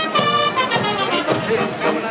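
Brass band music, trumpets and trombones playing a march with held notes.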